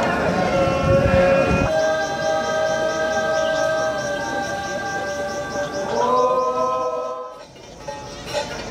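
A mixed group of men and women singing a Naga seed-sowing folk song, holding one long chord for about four seconds, moving to a new note about six seconds in, then fading out. Low thuds come in the first second or two.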